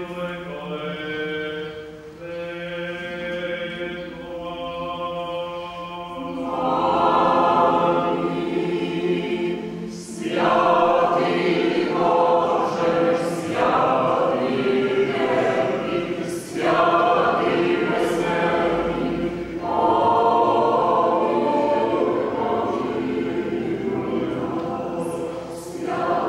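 Mixed church choir of men and women singing a cappella chant under a conductor. A soft held chord gives way about six seconds in to louder phrases, broken by short pauses for breath.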